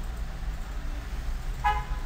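A single short, horn-like toot about one and a half seconds in, over a steady low hum.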